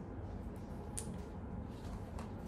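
Quiet room noise as a cotton jumpsuit is held up and handled, with one light click about a second in.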